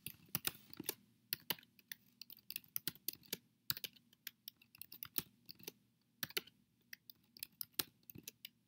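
Typing on a computer keyboard: irregular key clicks, several a second, in short runs with brief pauses between them.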